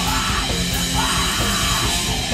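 Live heavy rock band playing loudly: distorted electric guitar and a pounding drum kit with cymbals, under yelled vocals.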